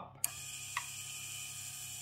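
A relay clicks on about a quarter-second in and a geared 12-volt DC motor starts running, a steady whine made of several high tones from the motor and its fixed gearbox.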